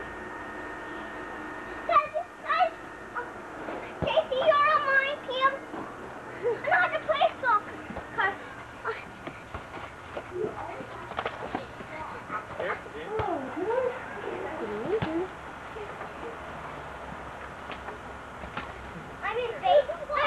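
Young children's voices, high-pitched calls and shouts on and off while they play, with a few short knocks.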